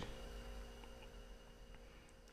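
Near silence: a faint steady hum, with two or three very faint small ticks in the middle.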